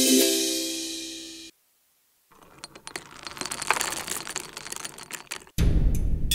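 A held musical chord fades out, followed by a brief silence. Then comes a faint run of quick, light clicks or taps lasting about three seconds. Louder sound cuts in suddenly just before the end.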